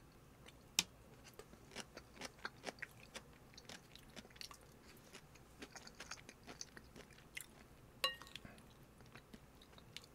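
Close-miked chewing of kimchi and rice: a run of small, irregular crunches and wet mouth clicks. About eight seconds in, a short ringing clink of a spoon against the ceramic rice bowl.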